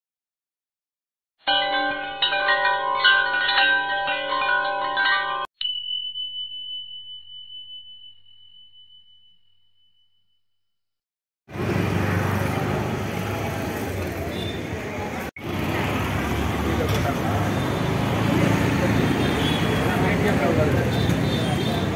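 A chiming intro jingle of several bell-like tones for about four seconds, ending in a single high ringing note that fades away over a few seconds. After a short gap, the steady noise of a busy outdoor market comes in: crowd chatter with traffic.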